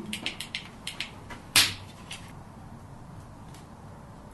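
Wood fire in an open fireplace crackling: a quick run of sharp, irregular crackles with one louder snap about a second and a half in, then only faint background hiss.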